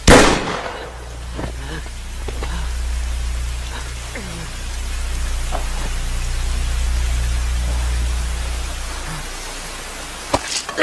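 A single loud gunshot right at the start, ringing away within about half a second, then steady rain with a low drone underneath that slowly swells and fades.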